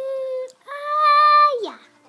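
A young girl's voice holding two long sing-song notes: a drawn-out "mmm", then a slightly higher, longer "yeah" that drops away at the end.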